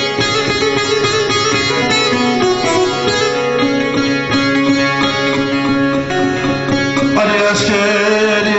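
Bağlama (long-necked Turkish saz) playing a melodic instrumental passage of plucked, ringing notes. A voice starts singing over it near the end.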